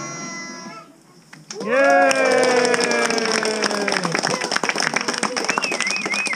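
A children's choir finishes singing about a second in. After a brief pause, an audience breaks into clapping and cheering, with one long falling "woo" over the applause.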